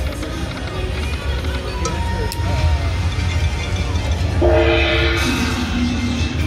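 Dragon Link slot machine playing its electronic game tones over a low casino hum. About four and a half seconds in, a loud held chord of several tones sounds, brightening near the end, as the machine's lucky chance spin feature starts.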